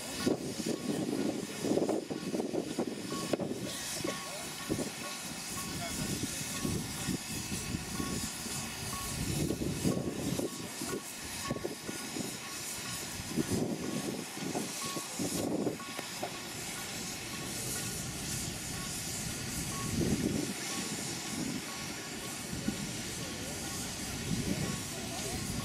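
Steam ploughing engine hissing steam as it winds a cable-hauled balance plough across the field, with indistinct voices and rumbling that rises and falls throughout.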